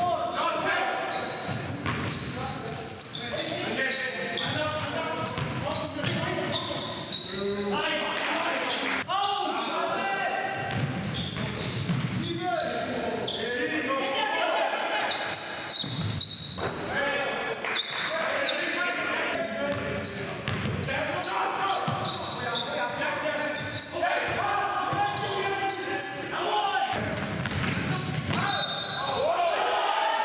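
A basketball dribbled and bouncing on a hardwood gym floor, mixed with players' voices calling out, all echoing in a large gym.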